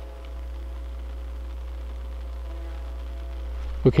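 Steady low electrical hum with no change in level, interference from the overhead high-voltage power lines picked up in the camera's audio.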